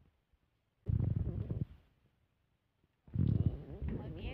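Two low, rumbling bursts of handling noise on a hand-held phone's microphone, one about a second in lasting just under a second, the other starting near the end.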